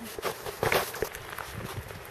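Footsteps in snow: a handful of irregular steps, the loudest about three-quarters of a second in.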